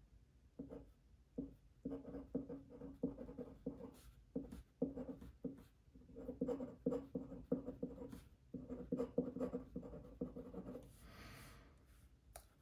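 Glass dip pen nib scratching on paper as a word is hand-lettered, in many short faint strokes with brief pauses between letters and words.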